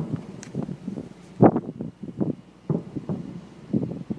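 Wind buffeting a phone microphone on a ship's deck in irregular gusts, the strongest about a second and a half in.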